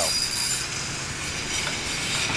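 Busy city street traffic: car, minivan and bus engines running with tyre noise, a steady low hum.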